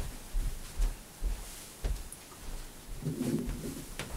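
Footsteps on a carpeted floor, a series of soft low thuds about two a second, followed by a faint low hum near the end.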